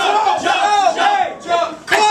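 Men's voices yelling over one another in high, strained shouts, with a brief lull about a second and a half in.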